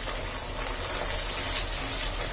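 Spice paste sizzling in hot oil in a non-stick frying pan as it is stirred with a silicone spatula, a steady hiss. The masala is being fried down (kosha) after garam masala has been mixed in.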